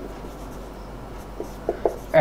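Marker pen writing on a whiteboard: a soft steady rubbing, with a few short quick strokes near the end.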